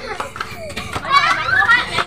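Several children shouting and talking over one another while playing.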